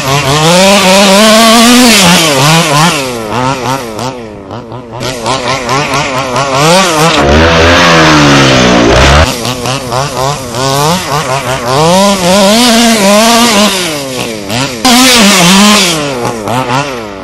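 HPI Baja 5B's small two-stroke gasoline engine revving hard as the RC buggy is driven, its pitch rising and falling every second or so with the throttle.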